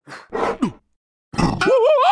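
Cartoon character vocalizing: a short grunt with falling pitch, then after a brief pause a loud cry whose pitch wobbles up and down, building into a yell near the end.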